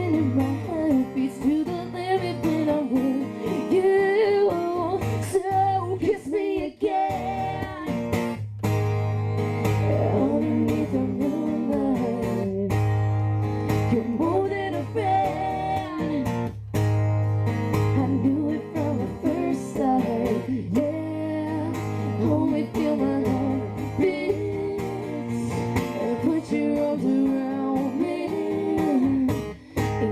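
Acoustic guitar strummed with singing over it, a live unamplified-style duo performance. The guitar is being played with its high string broken.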